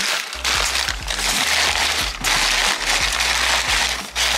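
Crumpled brown kraft packing paper crinkling as it is pressed down into a cardboard box as padding, with short pauses between handfuls.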